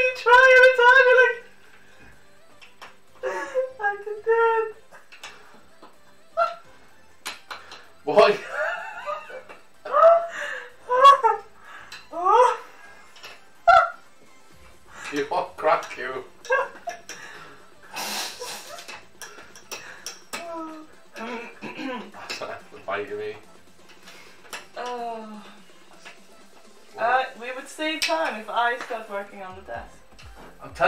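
Two people laughing hard in bursts, a man and a woman, mixed with a few broken words.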